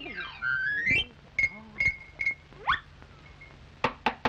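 Cartoon sound effects of knocking on a wooden door: three light ringing knocks about 0.4 s apart, then three sharp, louder knocks near the end. Rising whistled glides come before each set of knocks, over the hum of an early sound-film track.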